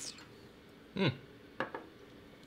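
A brief clink of glassware at the start, then quiet room tone with a short hummed "hmm" about a second in.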